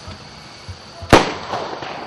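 A firework rocket bursting in the air: a single sharp bang about a second in, followed by a short echoing tail.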